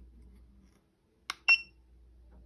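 GUTA tire pressure monitor: a button click about a second in, then a second click with a short high electronic beep from the monitor as its setting is stepped.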